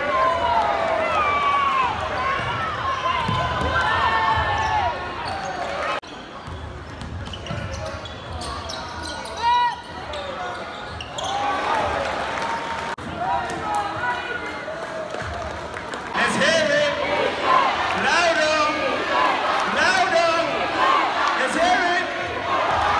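Live basketball game sound: the ball bouncing on the hardwood court, sneakers squeaking and players and spectators calling out. The sound cuts between plays a couple of times.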